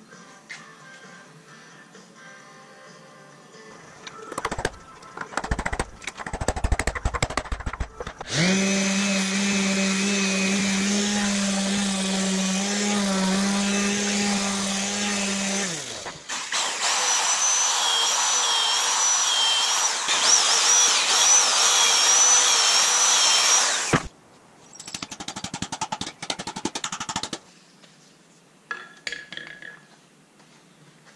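Power tools working a wooden mallet head in a vise: a steady motor hum for about eight seconds, then a louder, noisier tool with a wavering high whine for about seven seconds. Quick knocks and clatter come before and after the tool runs.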